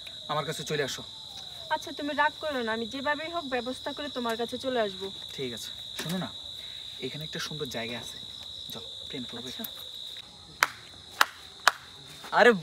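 Crickets chirring at night as one steady high drone that stops abruptly about ten seconds in, under low talking. Three sharp clicks come near the end.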